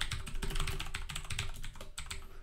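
Typing on a computer keyboard: a quick, steady run of keystrokes as a line of code is entered.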